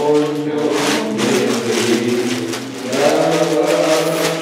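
Voices chanting the liturgy on long, sustained notes, with a change of pitch about three seconds in.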